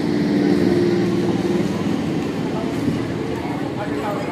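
Electric multiple-unit suburban local train moving past close by as it pulls out of a station: a steady motor hum under the rumble of wheels on the rails, easing slightly near the end.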